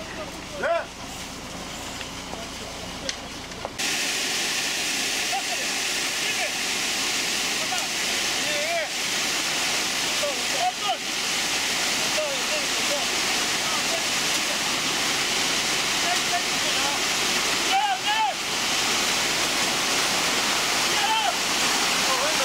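Ready-mix concrete truck discharging wet concrete down its chute: a steady rushing that starts abruptly about four seconds in.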